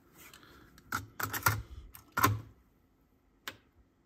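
Cassette being swapped in a Sony TC-K777 cassette deck: a handful of short plastic clicks and knocks as one tape comes out, a metal tape goes in and the cassette door is pushed shut.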